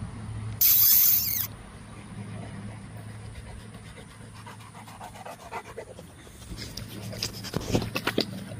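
Cane Corso dog panting, a run of quick breaths through the second half, over a steady low hum. About half a second in, a loud rush of noise lasts about a second.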